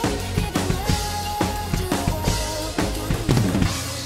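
PDP X7 acoustic drum kit with Zildjian cymbals played hard over a synth backing track: busy kick, snare and cymbal hits against steady held synth notes. Near the end comes a fast flurry of hits, after which the drumming drops away.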